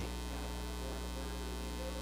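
A steady low electrical hum with a faint hiss, unchanging throughout.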